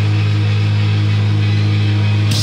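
A single low note held through a stage amplifier, a loud unbroken drone with no drums, as the band pauses between sections.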